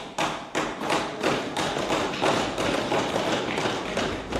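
Many members knocking on their desks in a dense, irregular run of thumps: desk-thumping, the parliamentary way of applauding a speaker's point.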